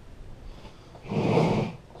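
A man's loud breath out through the nose, a short snort lasting just under a second, about a second in.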